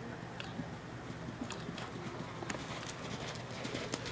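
Hoofbeats of a horse cantering on sand footing: faint, irregular thuds, a little under two a second.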